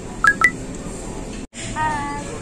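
Two short electronic beeps in quick succession, each starting with a click, the second pitched higher. A moment later the sound drops out completely for an instant, and a voice begins.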